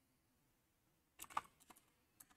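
A brief run of about five faint keystrokes on a computer keyboard a little over a second in, typing a short search term; otherwise near silence.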